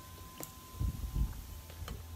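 A few sharp clicks and soft knocks from cut orange halves and a hand citrus juicer being handled on a table. A low wind rumble on the microphone runs underneath.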